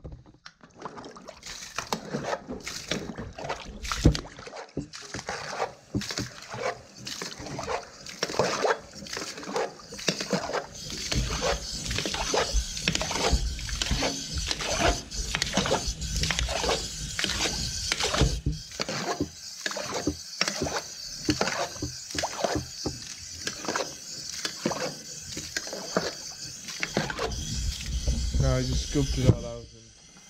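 Water being scooped and slopped out of a livestock water trough by hand, splash after splash in a steady rhythm, emptying water fouled with dung.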